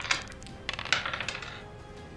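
Dice rolled onto a table, a quick run of small clicks and clatters about a second in. Faint background music underneath.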